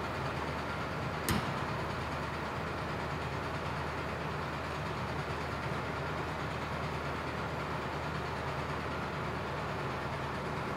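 Heavy truck engine idling steadily, with one sharp slam of the cab door shutting about a second in.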